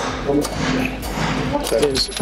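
Muffled voices over a steady hiss, with a low hum beneath.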